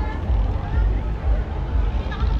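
Outdoor street crowd: scattered voices and chatter over a heavy, uneven low rumble.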